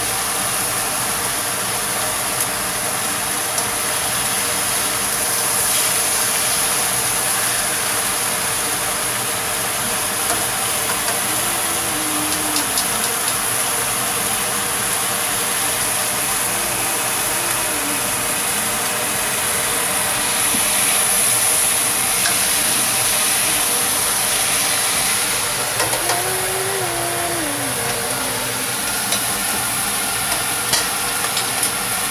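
Meat frying in hot oil in a nonstick wok: a steady sizzle with scattered crackles.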